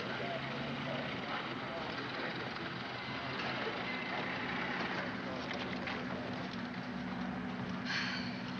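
Busy city street noise from an old film soundtrack: a steady mix of traffic and crowd babble.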